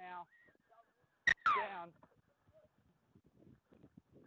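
A short shout, then a brief high whistle, then the sharp thud of a boot striking the rugby league ball about a second and a quarter in, followed at once by a shouted call falling in pitch. Soft scattered thumps of running players follow.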